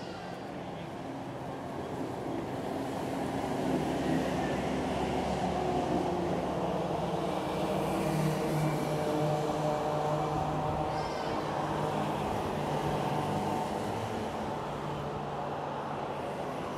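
Motor vehicles of a motorcade driving past: engine hum and road noise that build over the first few seconds, hold loudest through the middle, and ease off toward the end.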